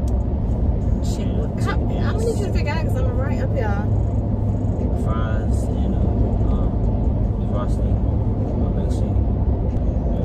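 Steady road and engine rumble inside an SUV's cabin at highway speed. A voice with wavering pitch, like singing, comes through over it about one to four seconds in and again briefly around five seconds.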